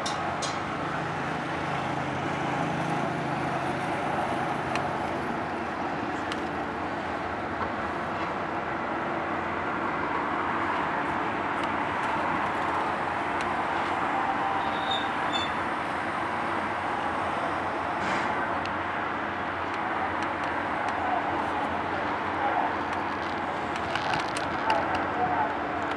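A large car ferry's engines and propellers running steadily as it manoeuvres stern-first to the quay, churning the water: a continuous rumble with a low hum that is stronger for the first few seconds.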